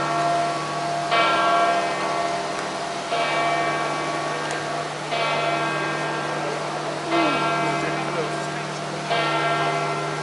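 A large church bell, that of St Peter's Basilica, tolling slowly: five strokes about two seconds apart. Each stroke rings on and overlaps the next, over a low murmur of the crowd in the square.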